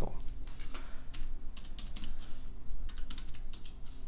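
Scientific calculator keys being pressed in a run of short clicks while a subtraction is entered.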